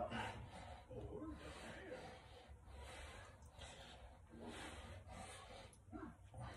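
Faint breathing from a man doing resistance-band front shoulder raises, soft puffs of breath every second or so.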